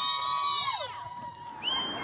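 Spectators cheering, several high voices holding long shouts that die away about a second in. A short shrill note sounds near the end.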